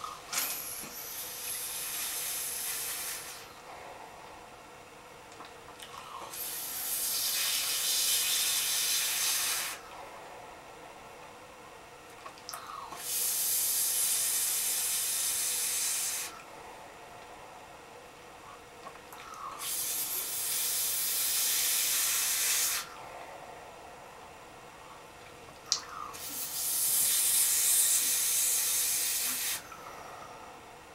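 Five long drags on a single-coil, cotton-wicked Immortalizer dripping atomizer on a brass Nzonic mechanical mod: a hiss of air drawn through the atomizer's tight air holes, about three seconds each, with quieter pauses between them. A single sharp click comes between the fourth and fifth drags.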